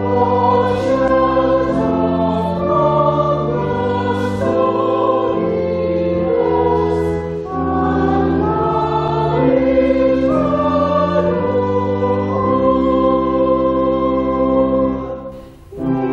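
Church choir singing slowly in long held chords that change every second or so, with a short break between phrases near the end.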